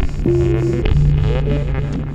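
Electronic music soundtrack made on an Elektron Digitakt: low droning bass notes that step in pitch, under a held higher note that cuts off just under a second in. It is a looping pattern that repeats about every two seconds.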